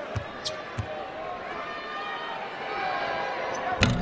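A basketball bounced a few times on a hardwood court as a free-throw shooter sets up, over arena crowd noise. Near the end the shot hits the rim and backboard with a loud clang and bounces on the rim before dropping in.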